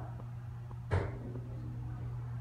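Steady low hum inside a moving 1989 Oliver & Williams hydraulic elevator cab, with a single short clunk about a second in.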